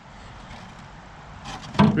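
Steady, even background hiss with no distinct events, then a man's voice begins near the end.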